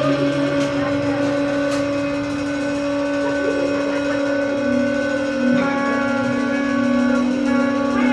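Saxophone and trumpet holding long, steady notes together in free improvisation, without drums. About halfway through, the lower note drops slightly in pitch and a brighter, higher tone comes in.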